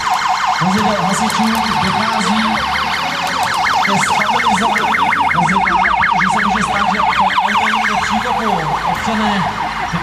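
Fire engine siren sounding in a fast yelp, its pitch rising and falling several times a second.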